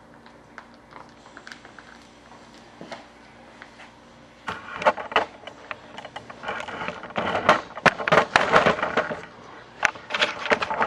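Faint sparse clicks and scraping as body filler is worked on paper, then, about four and a half seconds in, loud irregular crackling, crinkling and knocking of paper and camera handling noise as the camera is moved.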